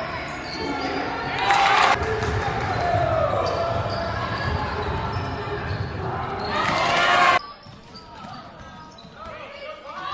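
Basketball game in a gym: a ball bouncing on the hardwood under a steady mix of voices, with two loud bursts of shouting and cheering from the crowd, about one and a half seconds in and again around seven seconds in. Just after that the sound drops suddenly to quieter game noise.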